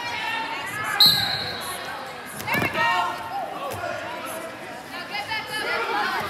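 Spectators and coaches shouting across a large hall during a wrestling bout. About a second in there is a short, high squeak, and at about two and a half seconds a low thud as the wrestlers go down onto the mat in a takedown.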